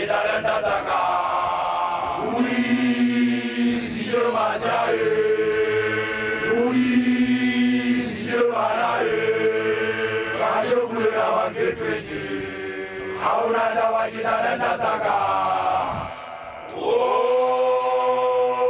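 Group of Basotho initiation graduates (makoloane) chanting a song together, long held notes in several voices phrase after phrase, with a brief pause near the end before the voices come back in.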